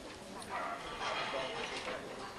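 Indistinct voices and laughter from people at an open-air meeting, with no one speaking clearly into the microphone.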